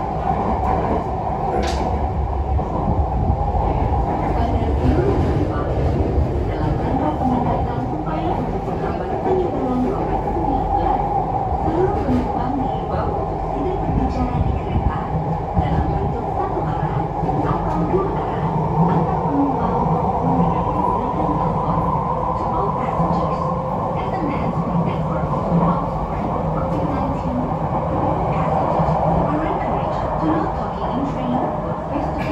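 Jakarta MRT train running, heard from inside the passenger car: a steady rumble from the wheels and running gear, with a steady whine that rises slightly about two-thirds of the way through.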